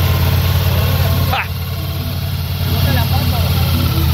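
Ducati Multistrada V4's V4 engine running at idle, with a brief dip about a second and a half in.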